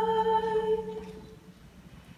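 A female singer singing solo into a microphone, holding one long note that fades away a little past the first second.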